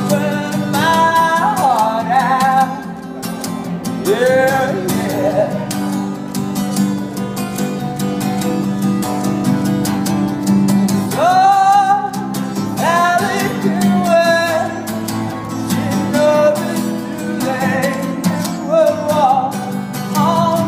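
A man singing in long sliding phrases over a strummed acoustic guitar.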